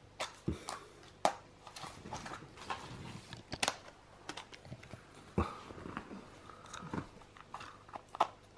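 Faint, irregular small clicks, taps and scrapes of a plastic Easter egg being handled and mouthed by a toddler.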